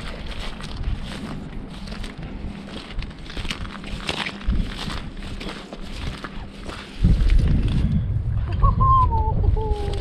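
Footsteps through shell-strewn salt-marsh grass and mud, with wind buffeting the microphone from about seven seconds in. A faint, distant shout comes near the end.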